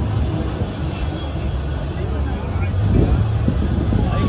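Deep, steady engine rumble of ships moving on the river, with people talking indistinctly nearby.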